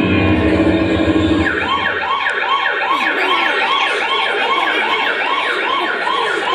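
A siren sound effect played through a loudspeaker. After a low rumble in the first second and a half, it sets in as a fast repeating rise-and-fall wail, about two to three cycles a second.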